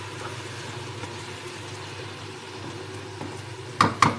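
Okra masala frying in a wok over a gas flame, a low steady sizzle under a steady hum, while it is stirred with a wooden spatula; one sharp knock of the spatula against the wok near the end.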